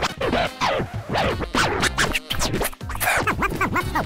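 Music with vinyl turntable scratching: a record dragged back and forth under the hand, each stroke a quick rise and fall in pitch. The strokes come fast and evenly spaced in the last second.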